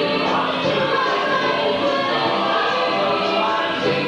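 Show choir singing a layered jazz arrangement, several vocal parts sounding at once in a steady, continuous blend.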